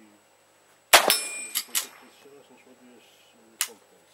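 A single rifle shot fired from prone, followed by a steel target ringing. Two sharp clicks follow about half a second later, and a smaller sharp crack comes near the end.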